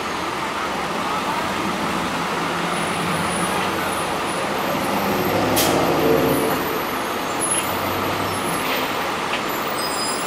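NJ Transit NABI 40-SFW city bus's diesel engine running as the bus pulls slowly away from the curb. The engine swells to its loudest about halfway through, with a brief sharp hiss of air at that point, then eases back to a steady hum.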